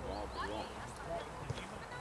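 Distant shouting voices of footballers on the pitch, calls rising and falling in pitch, over a low outdoor rumble, with a single sharp thump about one and a half seconds in.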